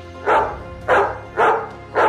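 A dog barking four times, about half a second apart, over soft background music.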